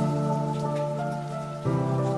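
Logo-intro music: a held chord of sustained tones that changes to a new chord about three-quarters of the way through, with a light pattering hiss like rain above it.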